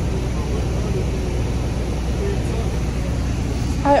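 Shuttle bus engine rumbling steadily, heard from inside the passenger cabin.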